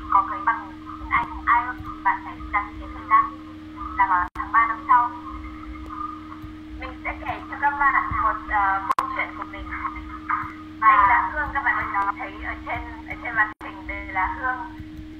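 Speech only: a person talking continuously, with a steady low hum beneath and three brief dropouts in the sound.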